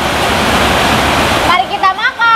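Steady hiss of heavy rain. It drops away about a second and a half in, and a voice comes in briefly.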